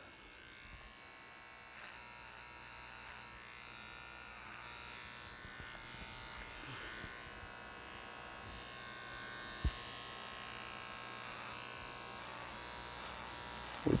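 Electric hair clippers buzzing steadily as they shave the hair off a tanned deer hide, trimming the coat down to cut a design into it. The buzz grows slightly louder, with one brief click about two-thirds of the way through.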